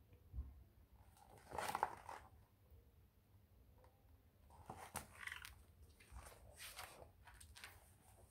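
Faint, short rustles and crinkles of paper, a picture book being handled and its page turned, with a soft knock about half a second in.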